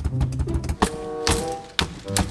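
Wooden drumsticks striking the painted wooden wall of a box in a run of sharp hits, with a few louder strikes in the second half. Background music with a drum beat plays under them.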